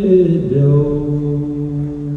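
Several voices singing slow, long-held notes in a chant-like style, moving to a new note about half a second in.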